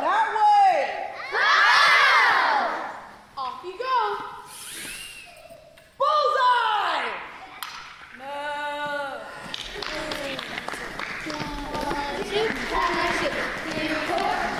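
A group of children's voices calling out together on stage in several loud rising-and-falling shouts, followed by a lower murmur of voices and movement in a large hall.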